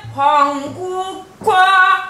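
Woman singing a Korean sinminyo (new folk song) in the traditional vocal style, with wavering held notes and a new phrase starting about one and a half seconds in. She accompanies herself with a couple of low strokes on a buk barrel drum.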